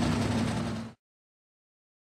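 Sprintcar engine running steadily at low revs as the car rolls slowly on the dirt track; the sound cuts off suddenly about a second in.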